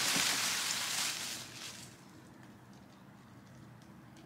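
Plastic bag rustling and crinkling as gloved hands rummage inside it, dying away about halfway through.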